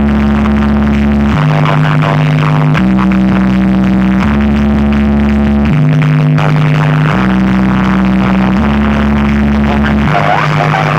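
Loud DJ music played through a truck-mounted rig of stacked loudspeaker cabinets, its heavy bass line changing note about every one and a half seconds.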